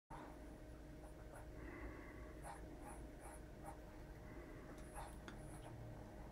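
Faint scratching of a marking pen drawn along the edge of an acrylic quilting ruler on cotton fabric, in a few short strokes, marking a diagonal stitching line on the corner squares.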